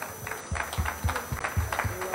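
Several soft, irregular thumps, about six in two seconds.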